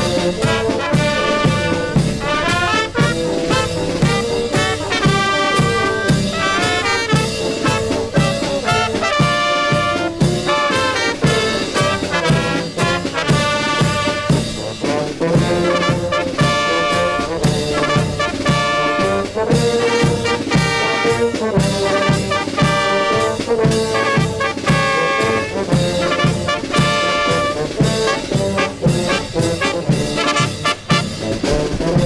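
Brass band playing a tune: trumpets, tubas and baritone horns sustaining the melody and harmony over a steady bass drum and cymbal beat.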